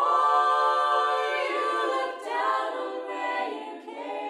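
Mixed-voice choir singing a cappella. The full choir comes in together after a brief pause and holds a chord for about two seconds before moving on to the next phrase.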